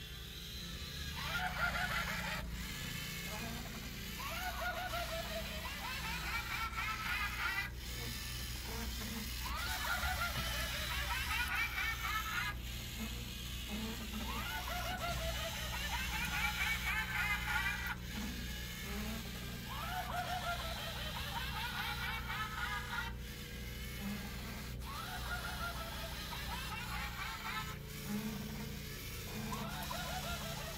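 A witch sound file, a wavering cackle-like laugh, playing over and over every few seconds from a LEGO Mindstorms EV3 robot, with a low steady hum underneath.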